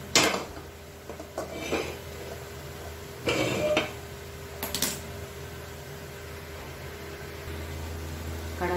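A metal kadhai set down on a gas stove's grate: a sharp metallic clank just after the start, then a few lighter knocks and a short scraping rush about three seconds in, and a couple of clicks near the five-second mark, as the pan is shifted into place. A steady low hum runs underneath.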